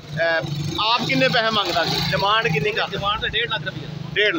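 Men's voices talking at a busy roadside, over a motor vehicle's engine hum that runs close by for about three seconds and drops away near the end.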